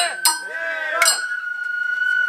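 Festival float music: a long held high note with sharp metallic strikes at the start and again about a second in, over men's voices.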